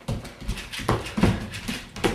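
Dancer's feet thumping and stepping on a wooden floor, a few uneven thumps each second.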